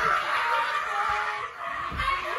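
Excited commotion: indistinct shrieks and yells, with a few heavy thuds of feet landing on a wooden floor.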